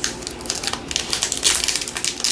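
Plastic wrapper of a Topps Allen & Ginter trading-card pack crinkling as it is handled, a rapid run of crackles that grows denser a little past the middle.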